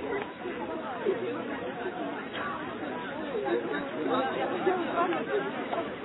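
Indistinct chatter: several people talking at once in the background, their voices overlapping.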